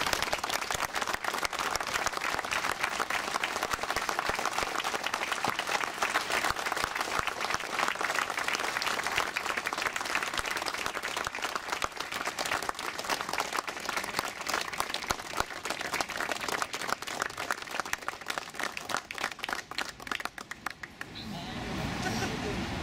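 Small crowd applauding, steady hand-clapping that thins out and dies away near the end.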